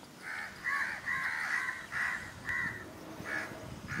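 Birds calling: a run of about ten short, harsh calls, bunched close together in the first half and more spaced out toward the end.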